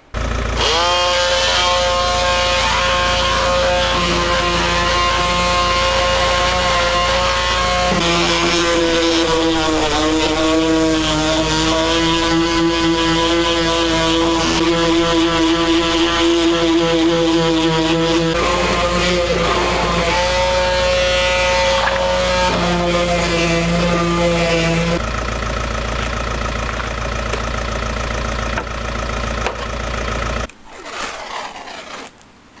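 Electric orbital sander with 120-grit paper running against a van's painted steel sill and door bottom. Its whine is steady, dipping and shifting in pitch several times.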